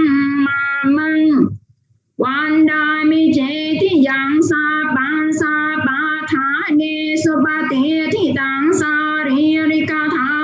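A high voice singing a slow melody, holding long notes with small slides in pitch. It breaks off for about half a second near the start, then carries on.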